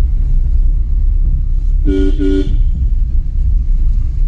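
A motorcycle horn beeps twice in quick succession about two seconds in, over a steady low rumble.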